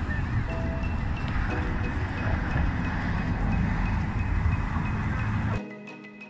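Loud outdoor noise with a heavy low rumble, as from wind on a phone microphone, with mallet-percussion background music faint beneath it. Near the end the rumble cuts off suddenly and the marimba-like music carries on alone.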